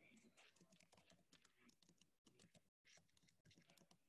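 Very faint typing on a computer keyboard, a quick irregular run of key clicks heard over a video-call microphone, with the audio cutting out briefly twice around the middle.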